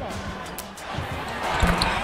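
A basketball dribbled on a hardwood court over arena crowd noise, with a heavier thud a little past halfway.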